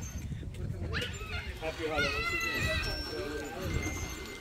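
High-pitched, wavering voice-like calls: a rising cry about a second in, then a longer wavering call from about two seconds in.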